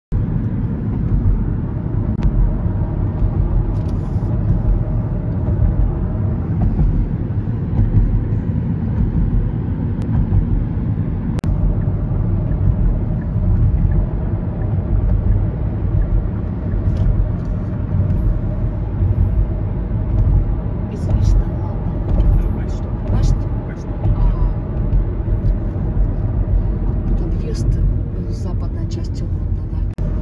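Steady low road rumble inside a moving car's cabin, the tyre and engine noise of driving along, with a few faint short clicks scattered through it.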